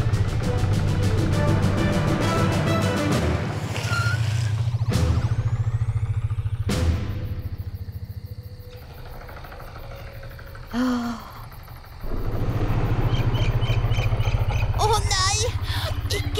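Helicopter rotor chopping steadily as it lifts off, with music underneath. It drops away to a quieter stretch broken by a brief low sound, then the rotor chop comes back loud about twelve seconds in as the helicopter passes overhead.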